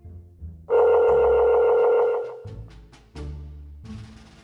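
A loud steady telephone tone from a phone's speaker, held for about a second and a half starting just under a second in, over background music with plucked bass notes.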